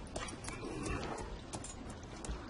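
Faint sounds of horses standing, with a few light scattered clicks.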